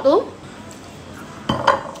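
A single brief clink against a plate about one and a half seconds in, from hand-eating off it with the fingers.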